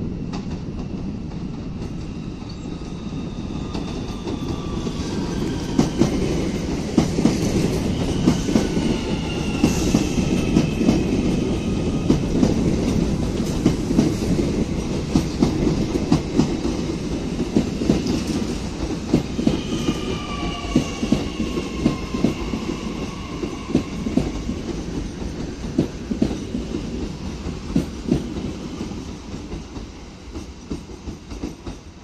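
Two coupled NAT (Z 50000 Francilien) electric multiple units passing at close range. The wheels click over rail joints above a low rumble, with a few high whines falling in pitch. It gets loudest in the middle and eases off near the end.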